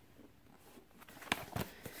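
Quiet room tone, then three or four short, light clicks in the second half, the sort of handling noise made while moving a cardboard cake-mix box.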